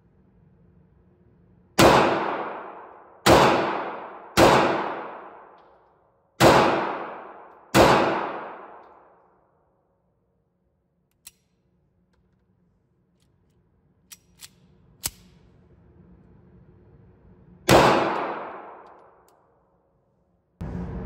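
Sig Sauer P938 subcompact pistol firing 9mm rounds, each shot ringing out with a long echo. Five shots come in quick succession, then one more after a pause of about ten seconds, with a few faint clicks of handling in between.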